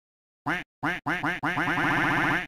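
Intro sting of short cartoonish electronic blips, each bending up and then down in pitch. Single blips come first, then they quicken and run together into a rapid warble in the second half.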